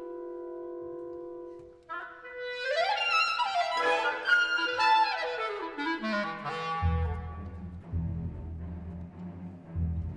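Solo clarinet holding one long steady note, then after a brief break playing a fast run of notes that climbs and then falls. Low sustained orchestral notes enter underneath about seven seconds in.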